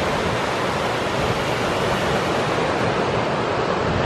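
Sea surf breaking and washing onto a sandy beach, mixed with wind rumbling on the microphone: a steady, unbroken rush. The sea is getting rougher, with higher waves building as a storm comes in.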